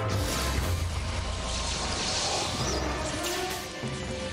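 Film soundtrack of a lightsaber duel: dramatic music under humming lightsaber blades, with swings and clashes as the red blades meet.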